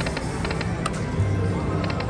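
Video slot machine spinning its reels: electronic game music with a quick, evenly spaced ticking of the reel-spin effect and one sharper click about a second in.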